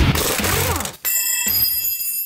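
Electric-guitar rock intro music cutting off about a second in, followed by a high, steady metallic ringing sound effect.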